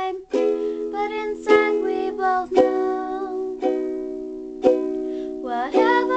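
Young girl singing while strumming a ukulele, about one strum a second, the chords ringing on between strums.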